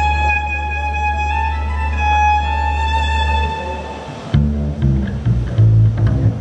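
Croatian folk band playing a drmeš live on an amplified stage: a fiddle holds a long note over a steady low drone. About four seconds in, it breaks into a rhythmic tune, with plucked double bass and guitar notes coming in.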